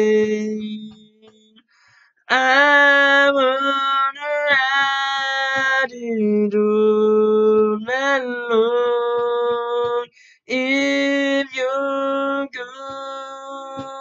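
A man singing a cappella: long held vocal notes with no clear words, cut by two short silences, one about a second in and a briefer one near ten seconds.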